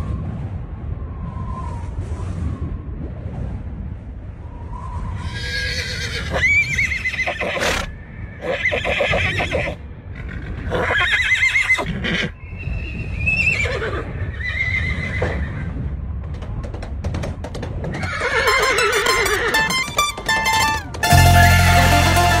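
Horses neighing and whinnying, about seven calls one every second or two from about five seconds in, over a low steady rumble. About a second before the end, a band led by a mandolin starts playing loudly.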